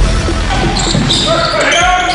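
Basketball game sound in a large gym: the ball bouncing on the court amid the hall's echo, with a voice starting to shout about halfway through.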